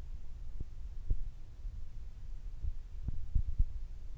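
Handling noise on a handheld camera's microphone: a low rumble with irregular dull thumps, several close together about three seconds in.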